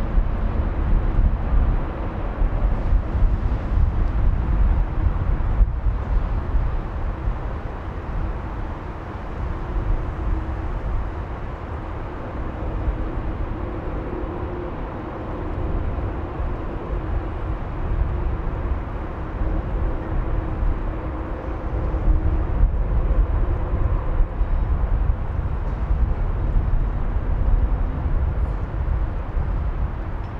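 Boeing 747 taxiing with its four jet engines at idle: a steady rumble with a faint even hum above it, swelling and easing a little.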